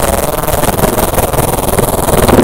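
Edited-in sound effect of explosive diarrhea: a loud, dense sputtering noise made of very rapid wet pops.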